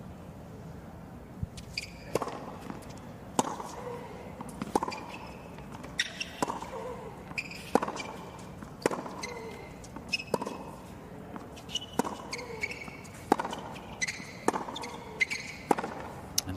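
Tennis rally on a hard court: a serve, then a long exchange of racket strikes on the ball about every second and a half, with ball bounces in between. Short high squeaks of shoes on the court come between the shots.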